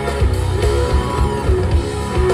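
A live rock band playing: electric guitar over bass guitar and drums, with keyboards, in a steady beat.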